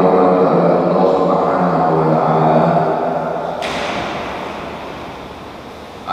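Voices chanting a cappella, a long phrase of drawn-out notes that slowly fades away, with a hiss joining about midway; a new phrase starts right at the end.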